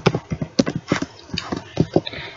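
Computer keyboard keys clicking as text is typed: a quick, uneven run of keystrokes, about five or six a second.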